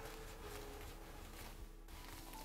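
Faint rustling of a microfibre cloth wiping a folding knife's steel blade, with a faint steady hum underneath.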